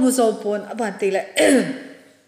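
A woman's voice speaking into a microphone for about a second and a half, then trailing off near the end.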